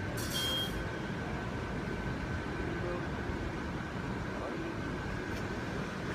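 Steady whirring hum of the electric blower fans that keep inflatable Christmas decorations inflated, with a faint high whine held throughout.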